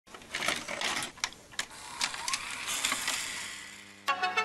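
Analogue videotape static and glitch noise: a hissing crackle broken by several sharp clicks, with a brief rising whine a little past the middle, fading out toward the end.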